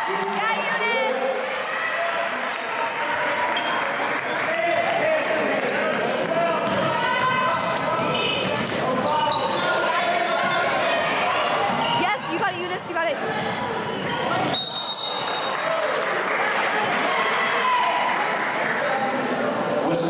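Basketball game in a gym: a ball bouncing on the hardwood under continuous spectator voices and shouts. About three quarters of the way through, a single whistle blast of about a second stops play.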